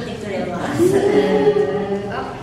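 Voices holding long pitched notes, several at once, with a louder held note starting a little under a second in.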